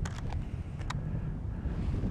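Strong wind buffeting the microphone, a steady low rumble, with a few faint clicks in the first second.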